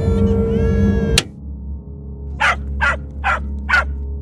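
A steady hum with thin whistling tones cuts off abruptly with a click about a second in. Then a cartoon dog yaps four times in quick succession, high and sharp, over a low steady drone.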